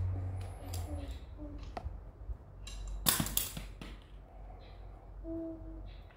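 Small plastic toy pieces being handled on a cloth-covered table: a few light clicks and knocks, with a louder rustling scrape about three seconds in.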